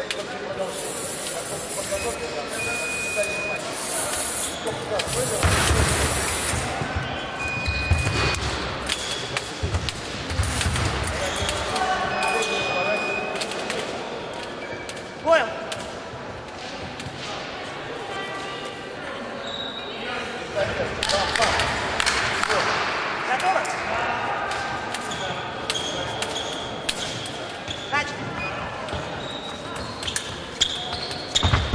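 Echoing sports-hall ambience: indistinct voices, dull thuds with a bouncing rhythm on the wooden floor, and one sharp knock about halfway through.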